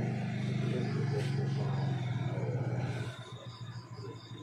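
A steady low engine hum, typical of a vehicle idling close by, with faint voices over it. It drops away about three seconds in. A few short high chirps come near the end.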